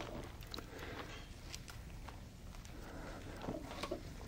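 Faint rustling and soft ticks of thin Bible pages being leafed through, scattered irregularly over a low steady room hum.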